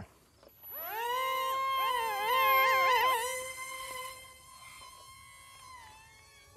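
The twin brushed motors and propellers of a small foam RC jet (XK A100 J-11) whine as the throttle comes up. The pitch rises, then holds. In the middle two pitches waver against each other as the motor speeds change for differential-thrust steering. The whine fades as the plane flies away.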